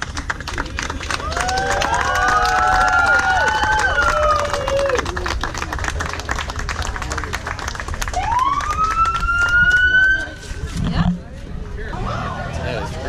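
Emergency-vehicle sirens in a parade: several overlapping wails rising and falling for the first few seconds, then a single siren winding up in pitch and cutting off suddenly about ten seconds in.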